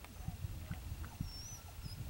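Quiet outdoor ambience: a steady low rumble with a few faint small ticks and several short, faint high chirps.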